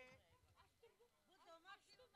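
Near silence, with faint voices of people talking in the background.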